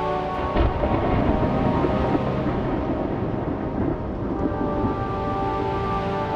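Film score with a sudden deep rumble breaking in about half a second in and swelling under the music, which thins to noise before its held tones return near the end.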